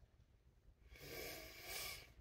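Near silence, then about a second in a soft, breathy rush of a woman's breath that comes in two swells.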